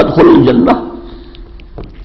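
A man's voice reciting a Quranic verse in Arabic, the last syllable drawn out as one steady held note for about a second before it stops and a short pause follows.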